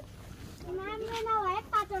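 A person's voice in a drawn-out call about a second long, rising and then falling in pitch, followed by a shorter call near the end.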